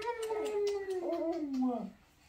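One long drawn-out vocal howl from a person, sliding slowly down in pitch for nearly two seconds and stopping just before the end.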